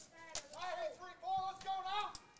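A spectator's voice calling out from the stands, high-pitched and drawn out into a long held note over the second half, quieter than the broadcast commentary.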